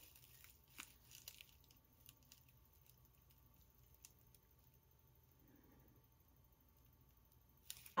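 Faint crackling of a dry twig craft nest as a glued artificial bird is pressed down into it: a few soft ticks in the first half, barely above near silence.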